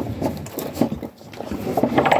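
A Jersey cow snuffling and breathing with her muzzle close against the microphone, in a series of irregular short puffs and rustles.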